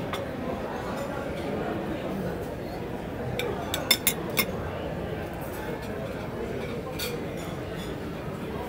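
Serving utensils clinking against china plates and serving dishes, a quick cluster of sharp clinks about halfway through and another near the end, over a steady background chatter of many voices in a dining room.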